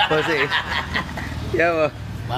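A man talking and laughing over a steady low hum.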